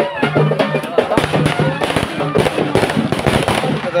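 Traditional band music with drums over a steady, held low droning note, joined from about a second in by a dense run of rapid, irregular sharp cracks.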